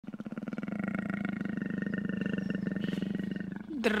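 A big cat growling steadily, a low, rapidly pulsing sound that holds one pitch for about three and a half seconds and stops just before the end.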